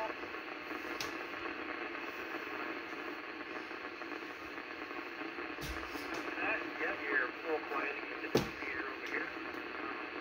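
Ten-metre FM radio signal hissing steadily through an Icom IC-746PRO transceiver's speaker, with a few sharp pops. From about six and a half seconds in, a faint, garbled voice breaks through the noise.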